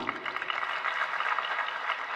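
Crowd applauding steadily.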